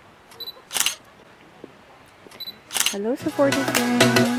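A digital camera's short high focus-confirm beep followed by a sharp shutter click, twice, about two seconds apart. Background music comes back in near the end.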